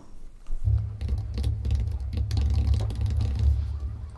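Computer keyboard typing: a fast run of key clicks over a steady low rumble that starts just under a second in.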